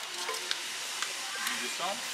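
Store background noise: a steady hiss with faint distant voices near the end and a few light clicks.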